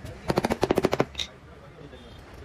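Small hammer tapping rapidly on a fabric-covered plywood panel: a quick run of about a dozen sharp knocks in under a second, then one more knock.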